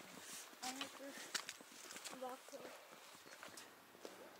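Footsteps of several people walking on a rocky path, an irregular series of faint scuffs and taps. Short bits of faint voices come in between.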